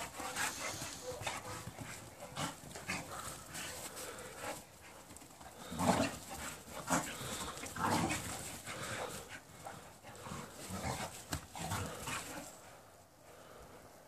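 Two pit bulls play-fighting, with dog panting and breathy noises in irregular short bursts, loudest in the middle and fading away over the last second or two.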